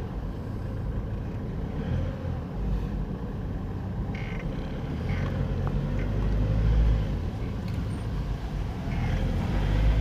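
Car engine running at low speed with tyre and road noise, heard from inside the cabin: a steady low hum.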